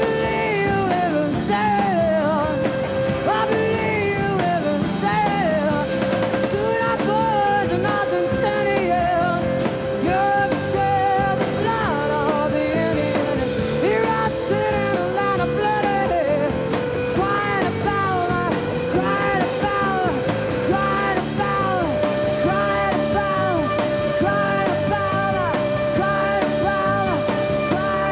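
Live rock band in an instrumental passage: acoustic guitars and a metal shaker, with a lead line of quick bending melodic runs over a long held note.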